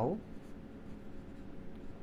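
Felt-tip marker writing on a whiteboard: faint rubbing strokes as a numeral and a word are written.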